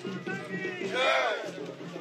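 A crowd of marchers shouting slogans, with one loud drawn-out shout about a second in, over steady music.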